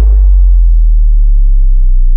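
A deep, loud, sustained sub-bass tone from the edited soundtrack, a sound-design bass drop laid under the slow-motion shot. It holds steady while its upper overtones slowly die away.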